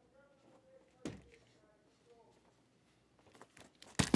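A mostly quiet room with a single sharp knock about a second in, then soft clicks and rustles near the end as a cardboard case of card boxes is handled. Faint voices sit underneath.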